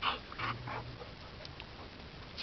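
Dog panting, a few quick breaths in the first second, then quiet except for a couple of faint ticks.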